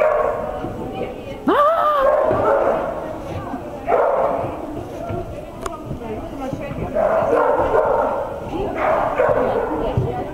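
A dog yips or barks in agility play, with a pitched call that rises then falls about a second and a half in. It is mixed with a handler's shouted commands and other voices.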